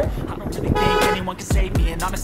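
A vehicle horn toots once, briefly, a little under a second in, over background music whose low beat thumps in the second half.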